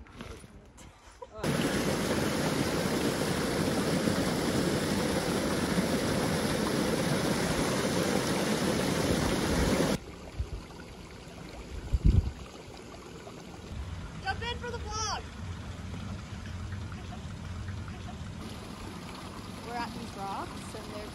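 Small waterfall's rushing water, a loud steady noise that cuts off suddenly about ten seconds in. It gives way to the quieter steady sound of a running stream, with a low thump about two seconds later and a brief voice near the end.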